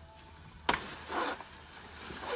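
A single sharp chop into a plantain trunk, the blade striking the stalk once while the plant is being cut down to drop its bunch.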